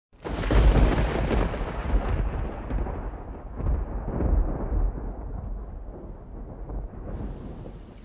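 A loud, deep rumble that starts suddenly and slowly dies away over several seconds, swelling a few times as it fades.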